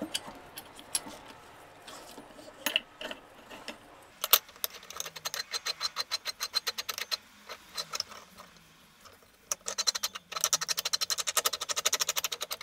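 Stainless steel vessel and its fittings being handled and twisted by hand: a few loose knocks, then two long runs of rapid, ringing metallic clicks, the second faster and louder near the end.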